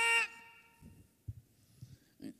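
A man's loud shouted "Stop!", held high and cut off just after the start, ringing on in the hall for about a second. Then quiet room tone with a few faint soft knocks.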